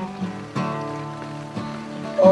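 Acoustic guitar strumming, its chords ringing, with a fresh strum about half a second in and another near the end.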